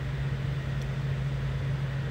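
Steady low hum under an even background hiss, with no speech.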